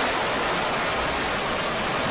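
Steady rushing noise of a Proton-M rocket's engines in flight, heard over a live TV broadcast, as the rocket tilts off its course.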